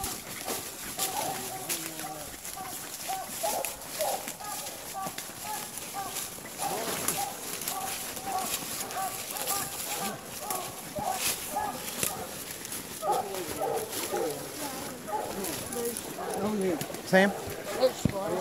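Coonhounds barking treed, a steady string of short barks.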